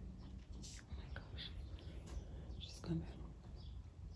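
Faint rustling and small knocks of a toddler handling plastic cream jars, with one soft thump just before three seconds in.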